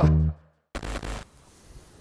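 The tail of a short beat-driven channel jingle, its last bass note dying away within about half a second. After a moment of silence comes a brief burst of noise, then faint background sound.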